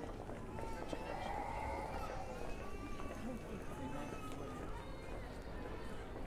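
Indistinct voices of people talking on a busy town street, over a steady low hum of outdoor urban background noise.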